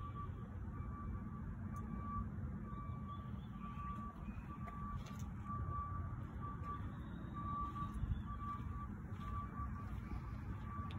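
An electronic warning beeper sounding a single high-pitched beep, repeating evenly about three times every two seconds, over a low steady rumble.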